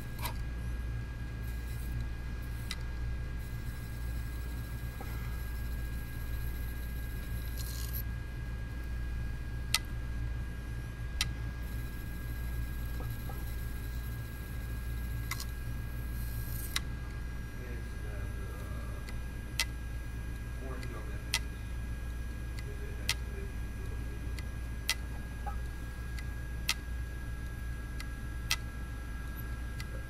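An opened laptop-size hard drive running with its cover off: the spindle motor hums steadily under a thin whine, with a few scattered sharp clicks, then from about two-thirds through a regular click roughly every 1.8 seconds. It is the drive's heads failing after a simulated drop and head crash.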